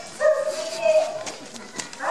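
A single high-pitched, drawn-out vocal call lasting about a second, holding almost level in pitch, followed by a couple of faint clicks.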